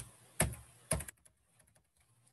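Computer keyboard keys being pressed: three sharp clicks in the first second, then faint light tapping.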